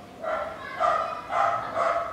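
A dog barking in the background, about four short barks half a second apart.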